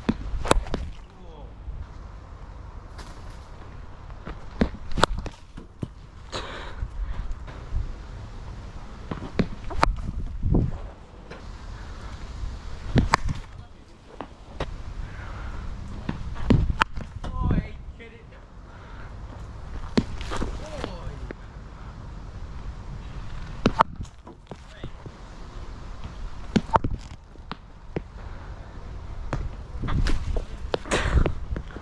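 A series of sharp knocks a few seconds apart, a dozen or so in all: a cricket ball pitching on the artificial-turf net lane and striking the bat, over a steady low rumble.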